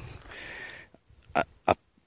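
A man's voice: a soft breathy hiss, then two short hesitant syllables.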